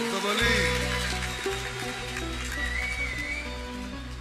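Live band playing an instrumental passage, held notes over a steady bass with a melody line above, slowly getting quieter.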